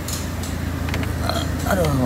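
Peugeot 206 petrol engine idling steadily, heard from inside the cabin as a low, even hum. Short plastic clicks and rustles from the lower dashboard trim panel being handled.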